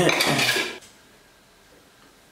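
Clattering and clinking as the camera is handled and moved, lasting under a second, then faint room tone.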